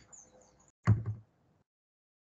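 A single knock or thud about a second in, sudden and loud against faint background noise, dying away within a few tenths of a second.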